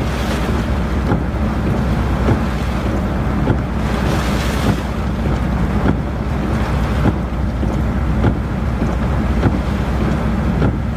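Heavy wind buffeting the microphone over the steady hiss of torrential rain, with a constant deep rumble and brief louder gusts.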